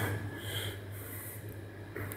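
Quiet background with a steady low hum and a faint breath or sniff close to the microphone about half a second in.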